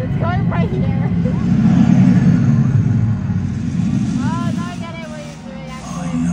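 The show vehicle's engine running as it drives across the arena floor, a steady low rumble that swells about two seconds in. Voices are heard over it near the start and again near the end.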